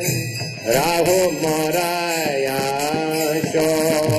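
Kirtan: a voice chanting a devotional melody in held, gliding notes, with small hand cymbals (kartals) ringing in a steady rhythm.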